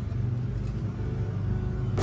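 A steady low rumbling hum.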